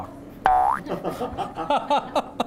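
A comedic cartoon-style sound effect about half a second in: a short pitched tone that slides quickly downward and then holds briefly, like a spring 'boing'.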